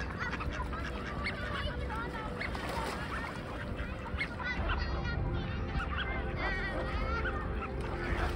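A flock of waterfowl, mallards among mute swans, calling in many short overlapping calls, with some higher, wavering trilled calls in the second half, over a steady low rumble.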